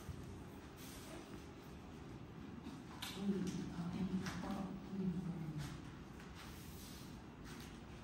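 A woman's voice making a few short vocal sounds, three in a row between about three and six seconds in, over steady low background noise.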